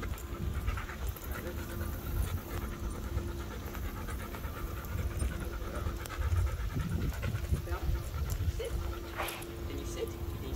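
A dog panting steadily as it walks on a leash, over a continuous low rumble.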